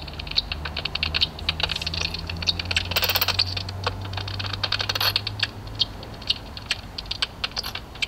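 Bat detector sounding common noctule echolocation calls as a rapid, irregular run of clicks, with denser bursts about three and five seconds in.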